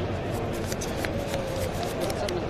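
Sleeved trading cards being handled: a quick, irregular run of small clicks and snaps as the cards slide and flick against each other.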